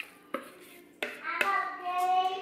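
A spoon and plastic food-processor bowl knocking against a stainless steel mixing bowl of chopped cranberries: two light knocks, then a sharper knock about a second in that leaves the metal bowl ringing for over a second.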